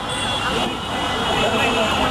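Voices in a street crowd over a steady rumble of traffic.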